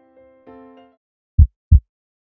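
Soft electric-piano notes fade out, then a heartbeat sound effect gives one low double thump, lub-dub, about a second and a half in, louder than the music.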